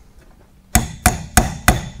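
Four sharp metal-on-metal taps about a third of a second apart, each with a short ring: pliers striking a cotter pin to seat it at the castle nut on the piston end of a hydraulic cylinder rod.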